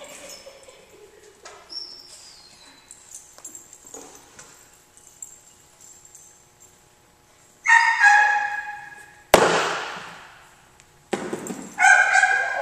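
Small dog barking in short, high-pitched yaps, two close together about eight seconds in. About a second later comes a single louder, harsher burst that dies away over about a second.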